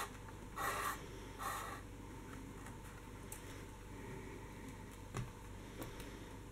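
Elastic cord being pulled through a hole in a kraft cardboard notebook cover and rubbing against the board, with two short rasps in the first two seconds. A few light taps follow as the cover and cord are handled.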